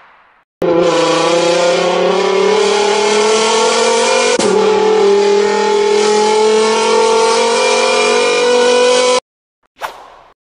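Car engine accelerating. Its pitch climbs steadily, drops at a gear change about four seconds in, climbs again and then cuts off suddenly. A short hit sounds near the end.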